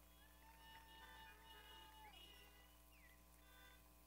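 Near silence: a faint steady hum, with faint drawn-out tones that slide in pitch at their ends.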